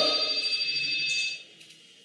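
The lecturer's last word ringing on in the hall's reverberation, with a few steady high tones held for about a second and a half before dying away. After that there is only faint room noise.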